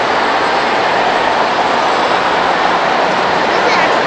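Audience applause: dense, steady clapping from a large crowd.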